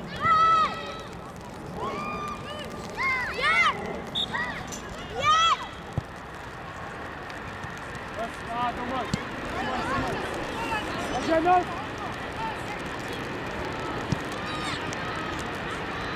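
High-pitched children's voices shouting and calling out across a football pitch: a few loud calls in the first six seconds, then fainter, overlapping shouts. A few short knocks sound in between.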